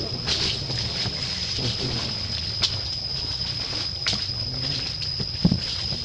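Outdoor background noise: a steady low rumble with a steady high-pitched whine over it. A few faint clicks come in the middle, and there is a short soft thump near the end.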